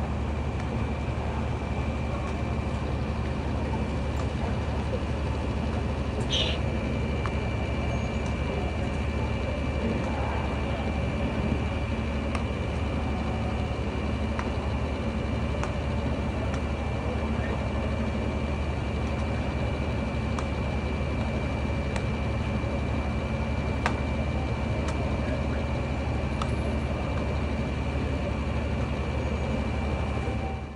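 Steady machinery hum with a constant high-pitched whine over it, unchanging throughout, with a few faint clicks now and then.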